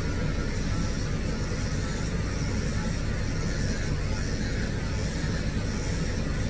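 A steady low electric motor hum at an even level throughout, from grooming-room equipment running.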